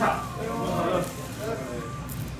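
People's voices: a short, high vocal exclamation right at the start, then indistinct talk with no clear words.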